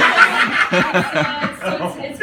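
Audience laughing and chuckling, with voices mixed in. The laughter dies down toward the end.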